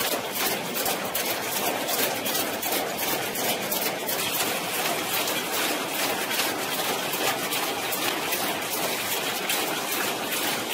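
Industrial egg-processing machinery running, a constant mechanical noise with rapid, even clicking from the egg-cracking mechanism.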